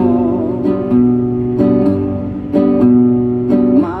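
Acoustic guitar strummed as the introduction to a corrido, a chord struck about once a second with its low notes ringing on between strokes.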